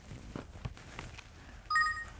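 Faint handling clicks, then near the end a brief electronic chime of a few steady high tones, the kind of sound effect a TV variety show lays under a pop-up caption.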